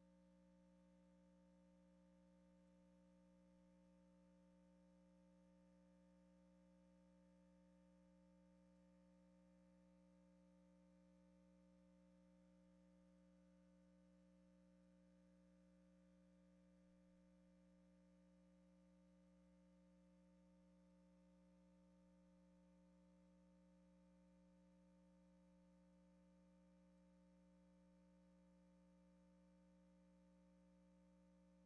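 Near silence: only a faint, steady hum made of a few fixed tones that never change.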